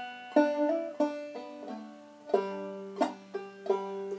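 Clawhammer banjo played slowly: a phrase of single plucked notes at about two or three a second, each left ringing.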